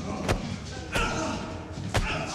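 Heavy thuds of blows and kicks landing in a fight, three of them about a second apart, over men shouting.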